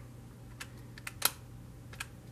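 Keys of a Casio desktop calculator being pressed: a quick run of about half a dozen light clicks, the loudest a little past halfway, as a subtraction is keyed in.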